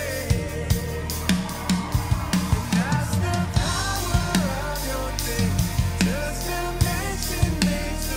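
PDP acoustic drum kit with Zildjian cymbals played to a steady beat of bass drum, snare and cymbals, along with a recorded worship-rock song whose melodic line glides over the band.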